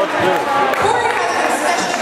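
An MC speaking, his voice echoing in a large gymnasium.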